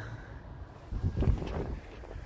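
Low rumble of wind and handling noise on a handheld microphone as it is moved about, louder for a stretch starting about a second in.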